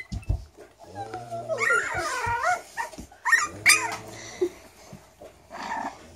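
Frenchton puppies playing and making high-pitched, wavering whines and yips, in two main bouts about two and three and a half seconds in, with a few soft thumps near the start.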